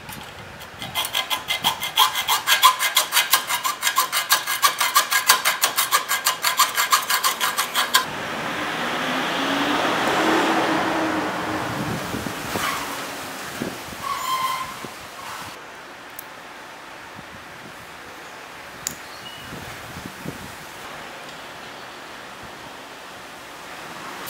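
Hacksaw cutting through a steel chain link clamped in a bench vise, with quick, even strokes at about four a second for some seconds. Then comes a smoother, continuous rasp, then a few light metal clicks.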